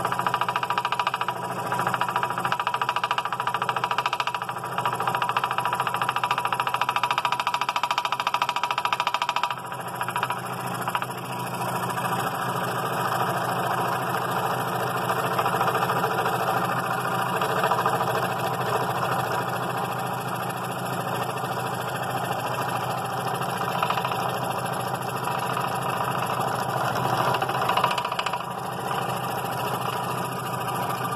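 A scroll saw running at slowed speed, its skip-tooth blade stroking up and down as it cuts a thick laminated walnut block. The sound is steady, with a brief dip about ten seconds in.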